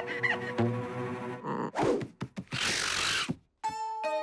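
Cartoon music with comic sound effects: held notes give way, about a second and a half in, to a couple of whooshing rushes and a few quick knocks, then a brief silence before new music starts near the end.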